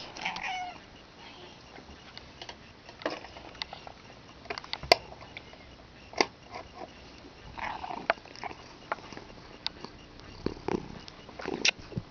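A house cat meowing briefly, once just after the start and again about eight seconds in, among scattered clicks and knocks from the camera being handled.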